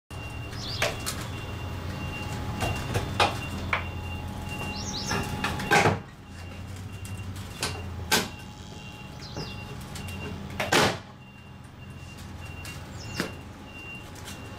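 Sharp knocks and clunks from a cut transom rail being worked loose and pulled out of an entrance door frame, about ten separate hits, the loudest about six and eleven seconds in. A low steady hum runs underneath until near the end, and birds chirp briefly a few times.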